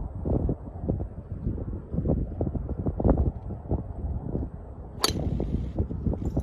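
Golf driver striking a ball off the tee: a single sharp crack about five seconds in, over a steady rumble of wind buffeting the microphone.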